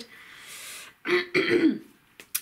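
A woman clears her throat twice, about a second in, after a short breathy sound. She still has a bit of a cold.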